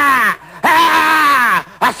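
A person's exaggerated, wordless groans: a short falling one, then a longer one of about a second that rises slightly and sinks.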